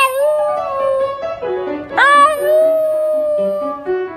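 Shiba Inu howling along to piano music: two long howls, each sliding up at the start and then held on one pitch, the second beginning about halfway through.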